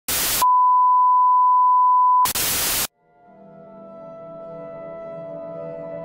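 Television static hiss in a short burst, then a steady high test-tone beep for about two seconds, then static again. After a moment's silence, soft sustained music fades in about three seconds in.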